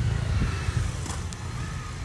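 Small dirt bike engine running nearby, heard as a steady low rumble.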